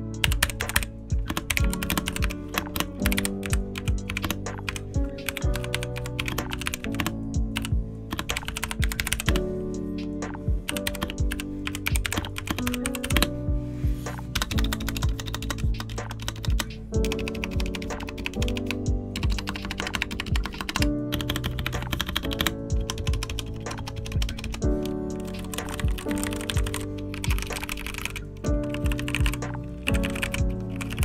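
Typing on a stock, unmodded Royal Kludge RK61 60% mechanical keyboard: a steady run of rapid, irregular key clacks, straight out of the box. Background music plays underneath.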